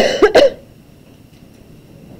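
A person coughing twice in quick succession, then quiet room tone.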